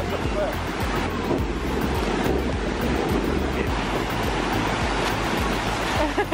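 Ocean surf breaking and washing up the beach in a steady rush, with wind on the microphone. Music with a low bass line plays underneath.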